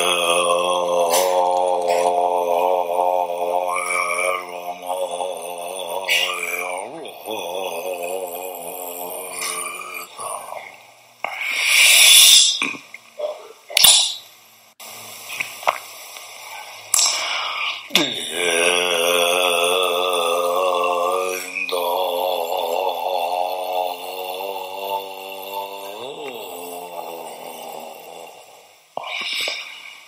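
Slow Tibetan Buddhist chanting: a deep voice holds long, drawn-out notes with a slight waver, each sliding down into the note at its start. The first note lasts about ten seconds, and a second begins about eighteen seconds in and runs some eight seconds, with a couple of brief, sharp, noisy sounds in between.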